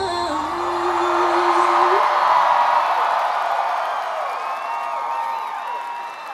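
Live pop concert: the song ends on a long held note that cuts off about two seconds in, and a large crowd of fans cheers and screams, with individual whoops rising over it later on.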